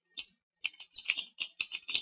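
Computer keyboard being typed on: a quick, uneven run of keystroke clicks, sparse at first and coming faster after about half a second.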